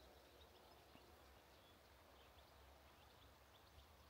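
Near silence: faint outdoor ambience with scattered faint bird chirps.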